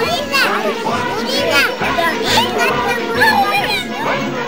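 A group of young children chattering and calling out excitedly, many high voices overlapping, with music playing underneath.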